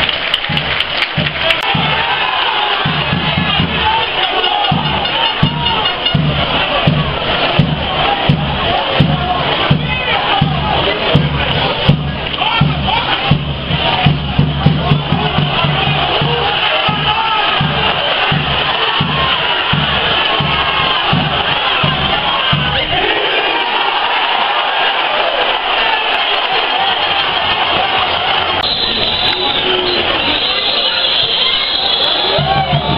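Stadium crowd of football supporters singing and chanting, with a bass drum beating about twice a second. The drum stops a little over three-quarters of the way in and the crowd carries on.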